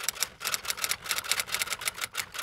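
Typewriter keystroke sound effect: a rapid run of sharp clicks, about seven a second, timed to text being typed out on screen.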